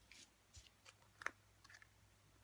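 Near silence with faint handling of cardstock: a few light paper rustles and small taps on the work mat, one slightly louder tap a little past a second in.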